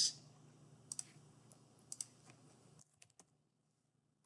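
A few separate clicks of a computer mouse and keyboard keys, spaced irregularly, over a faint low hum that cuts off just under three seconds in.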